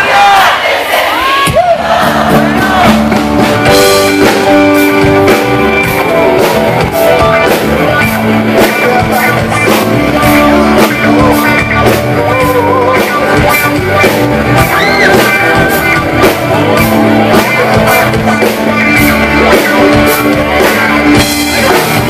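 Live band playing a pop-rock song at concert volume, with acoustic guitar and a steady drum beat, heard from within the audience. Crowd whoops and shouts are mixed in over the first couple of seconds.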